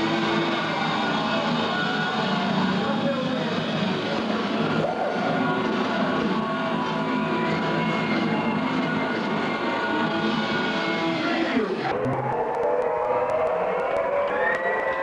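Heavy metal band playing live and loud: distorted electric guitars hold sustained notes, some bending in pitch. Just before twelve seconds in, the sound loses its upper range.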